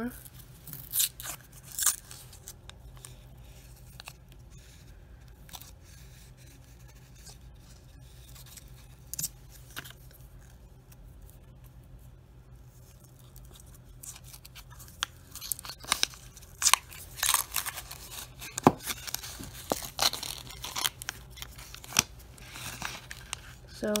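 Paper coin-roll wrapper being crinkled and torn open by hand: a few sharp rustles at the start, a quieter stretch, then a dense run of crinkling and tearing over the last several seconds as the roll of pennies is opened.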